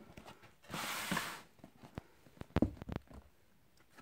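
Tissue paper in a shoebox rustling briefly, then a few light knocks and taps as a leather boot is lifted out and set down on a wooden floor.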